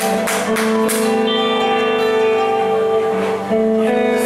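Live band playing an instrumental passage on electric guitars: a few strummed chords in the first second, then chords left ringing.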